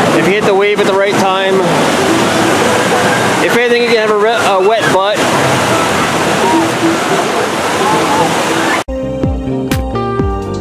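Rushing whitewater of a river-raft ride's channel, pouring over rock cascades, with people's voices rising over it twice. About a second before the end it cuts off abruptly and music begins.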